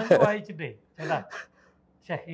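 A man's voice in a loud gasping exclamation that falls in pitch, followed about a second later by two short breathy sounds.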